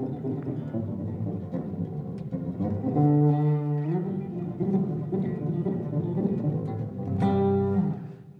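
Five-string electric bass guitar played solo with rapid four-finger plucking, a fast run of notes. A note is held about three seconds in and then shifts in pitch, and another is held near the end.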